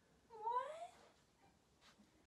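A cat meowing once, a short call of about half a second that rises in pitch.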